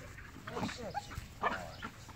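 Belgian Malinois-type dog making a series of short, high whines and yelps that bend in pitch, the excited sounds of a dog worked up for bite training.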